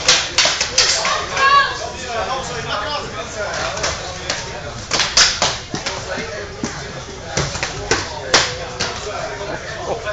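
Eskrima sticks striking in fast, irregular clacks and cracks as two fighters trade blows, in flurries near the start, about five seconds in, and again around seven to eight seconds.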